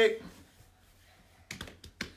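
A quick cluster of several sharp clicks about one and a half seconds in, after a near-quiet pause in a small room.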